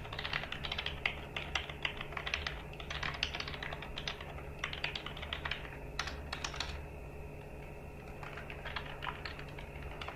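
Computer keyboard being typed on in quick runs of keystrokes, with a short pause about seven seconds in before a few more keys. A steady low hum runs underneath.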